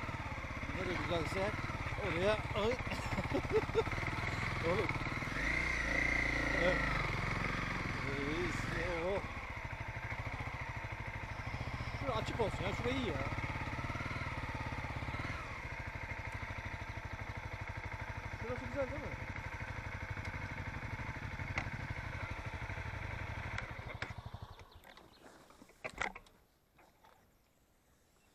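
A vehicle's engine running steadily at low speed, then switched off about 24 seconds in. A few faint clicks follow.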